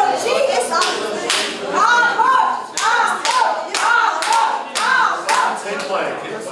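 A crowd clapping in rhythm, about two claps a second, with voices chanting or shouting in time over the claps from about two seconds in.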